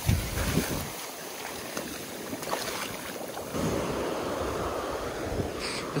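Surf breaking on a beach, a steady wash of waves, with wind buffeting the microphone.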